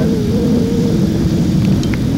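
Boat motor running steadily: a low drone with a faint wavering hum, and a brief high chirp near the end.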